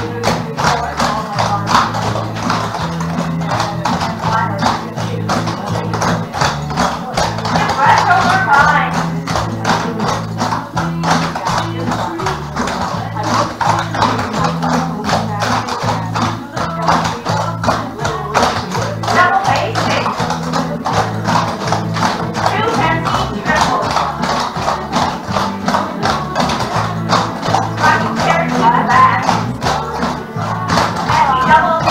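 A sung song with a steady bass beat, over which several cloggers' shoe taps click rapidly on a wooden floor as they dance in time.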